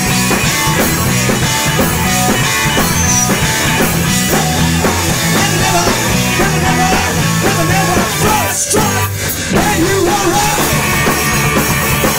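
Live rock band playing loud: electric guitars, bass and drum kit, with a brief dip in level about nine seconds in.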